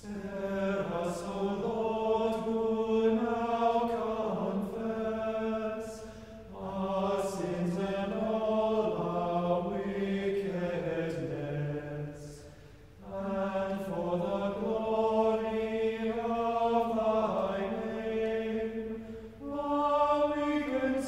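A choir singing chant in unison, one slowly moving melodic line held in long phrases of about six seconds, with short breaks for breath between them.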